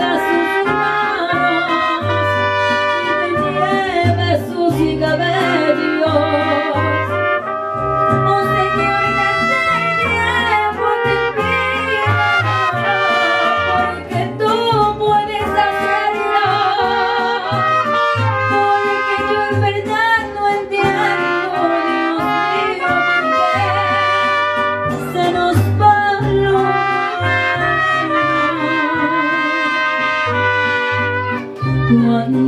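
Mariachi band playing a lively song, with brass carrying the melody over strummed guitars and a steady, pulsing bass.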